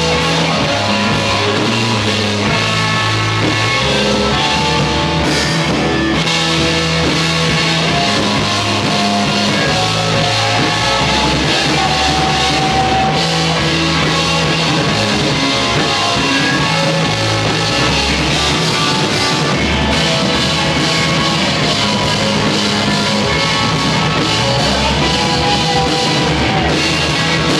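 Full rock band playing live: electric guitar, bass, synthesizer and drum kit, running at a steady loud level. The recording was made on a Wollensak 3M 1520 reel-to-reel tape machine.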